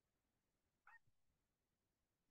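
Near silence: room tone, with one very faint, brief chirp about a second in.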